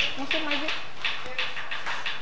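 Indistinct voices of several people talking at once in a room, no words clear.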